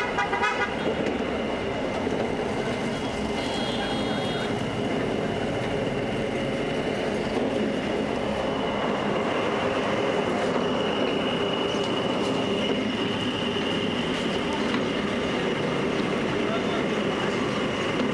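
Motorized sugarcane juice press running steadily as cane stalks are fed between its steel rollers: a continuous machine hum with a thin high whine that grows stronger about halfway through.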